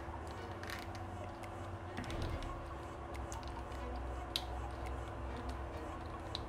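Scattered small plastic clicks and scrapes of a GAN Skewb M Enhanced's corner piece being handled and pried apart, the sharpest click about four seconds in, over a steady low background hum.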